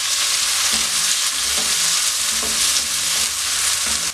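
Chopped tomatoes and curry leaves frying in oil in a non-stick wok with a steady sizzle, stirred with a wooden spatula.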